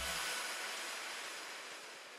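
Electronic background music cuts off at the very start, leaving a hissing noise tail that fades away steadily.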